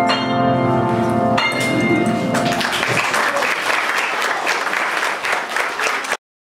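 Upright piano playing its final chords, the last struck about a second and a half in and left ringing. Then the audience applauds from about two and a half seconds in.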